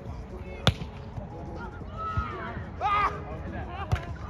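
Hands striking a volleyball during a rally: a sharp slap less than a second in, and another just before the end as a player leaps at the net to hit. Players shout between the hits.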